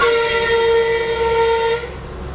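A vehicle horn sounding one steady note of unchanging pitch, held for about two seconds and cutting off just before the end.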